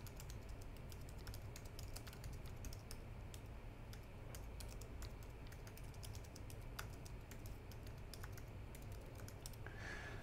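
Computer keyboard being typed on, a faint, quick, irregular run of key clicks as a sentence is entered.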